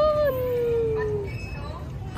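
A young child's long, high-pitched vocal call, held without words. It rises briefly, then slides slowly down in pitch for about a second and a half, made while she rides down a playground slide.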